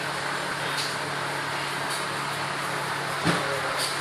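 Steady whirring drone of an electric floor fan running, with a constant low hum. A single short knock sounds about three seconds in.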